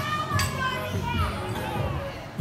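Several voices calling out and chattering over background music playing in the gym.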